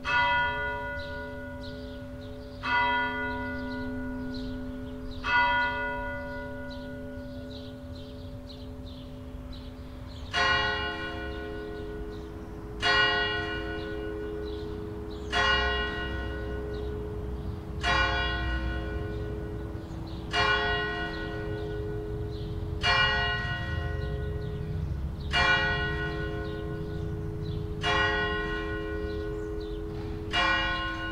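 Swinging bronze church bells of Växjö Cathedral ringing. One bell strikes three times about two and a half seconds apart and fades. After a pause of about five seconds, a different bell starts striking steadily about every two and a half seconds, each stroke ringing on into the next.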